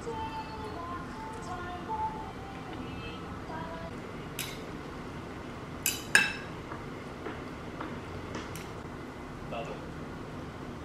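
Metal fork and steel chopsticks clinking against a ceramic bowl as noodles are tossed: a few scattered sharp clinks, the loudest about six seconds in.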